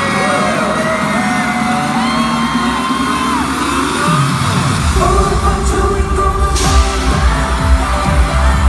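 Loud pop music played over the arena's PA, with fans screaming over it. A heavy bass beat comes in about five seconds in.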